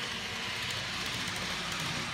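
N gauge model train running along the layout's track: a steady whirr of the small motor and wheels on the rails.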